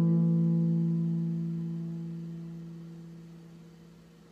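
Final chord of the song on a Telecaster-style electric guitar, left ringing and slowly fading away.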